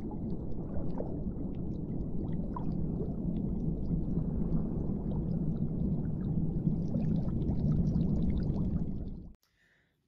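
Underwater ambience sound effect: a low, steady rumble of water with scattered small bubbling pops, cutting off suddenly shortly before the end.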